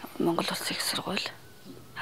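A woman speaking for about a second, then a short pause.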